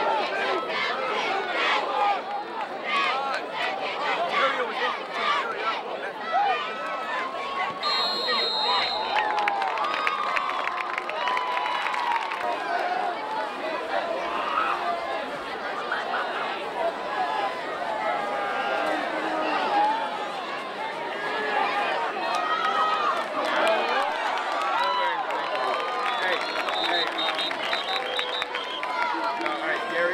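Spectator crowd chatter: many people talking and calling out at once, with no single voice standing out. A run of sharp hits sounds over the first several seconds.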